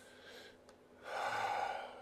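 A man takes one heavy, audible breath, like a sigh, about a second in, lasting just under a second.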